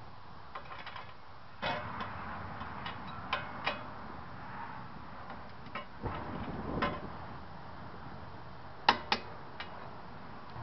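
Scattered clicks and clinks of hand tools being worked and handled at a car's front wheel hub and strut, with a longer rustling stretch midway and two sharp metallic clicks near the end.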